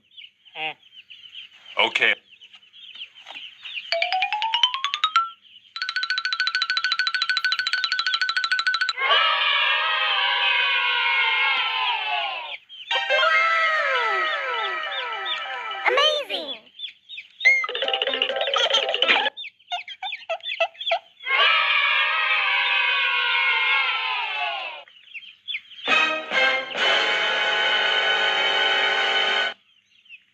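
A string of cartoon sound effects: a quick rising slide-whistle glide, a held buzzing tone, then several rounds of falling, whistle-like swoops, and a held tone near the end.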